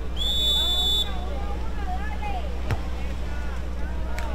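Referee's whistle blown once, a short steady high blast of under a second, signalling the serve in a beach volleyball match. Crowd voices follow, and a single sharp smack about two and a half seconds later fits the server's hand striking the ball.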